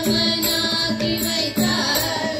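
Carnatic devotional song sung by a group of voices on held, chant-like notes, with strokes on a double-headed barrel drum.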